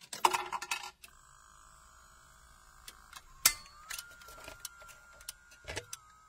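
A coin dropping into a jukebox with a quick run of ringing metallic clicks. Then the jukebox mechanism whirs with a faint steady whine and scattered clicks as it selects and loads a record, the whine stepping up in pitch a little past halfway.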